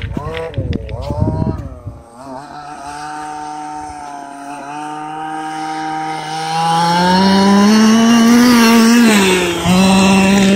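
Losi DBXL 1/5-scale RC buggy's small two-stroke petrol engine running at high revs, with a chainsaw-like buzz. It is rough and loud for the first two seconds, then settles into a steady, thinner whine as the buggy runs off. After that it climbs in pitch and grows louder as the buggy comes back under throttle, with a short dip just before the end.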